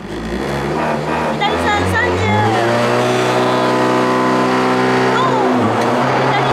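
Honda Integra DC2 Type R's four-cylinder engine revved up from idle and held at high launch revs on the start line. The revs dip briefly near the end as the clutch goes in and the rally car pulls away at the stage start.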